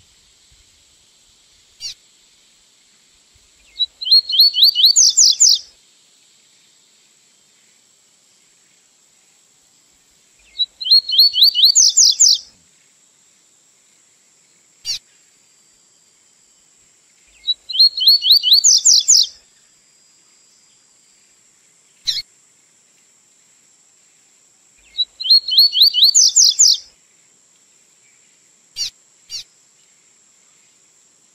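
Double-collared seedeater (coleiro) singing the 'tui-tui' song type from a song-training recording. Each phrase is a quick run of repeated notes rising in pitch and lasts about two seconds. The phrase comes four times, roughly every seven seconds, with a single short chirp in each gap.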